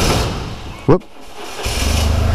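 Motorcycle engine coming up to a steady low rumble about one and a half seconds in as the bike pulls away, preceded by a short broad hiss.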